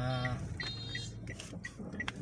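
Inside a moving Toyota Calya: a steady low engine and road rumble, with a short electronic beep repeating about three times a second. A man's voice is heard briefly at the start.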